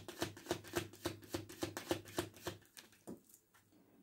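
A tarot deck being shuffled by hand: a quick run of card clicks that stops about three seconds in, followed by one last click.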